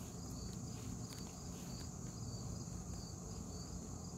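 Insects, crickets by their steady high chirring, sounding as a continuous chorus, with a faint low rumble underneath.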